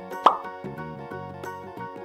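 A single sharp pop about a quarter second in as the cap is pulled off a black marker, over steady children's background music.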